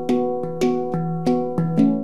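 Handpan played with the fingers: a melodic run of struck steel notes, about three a second, each ringing on after it is hit.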